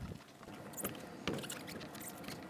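A few soft knocks and scuffs of running shoes being set down and moved on a wet car roof, two of them a little under a second apart.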